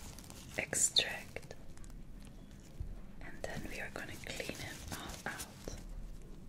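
A tissue wiping and dabbing over a silicone pimple-popping practice pad, heard close up as soft rustling, with a few sharper crackles about a second in.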